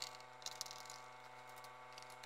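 Near quiet: a faint steady electrical hum with a couple of faint small ticks, one at the start and one about half a second in.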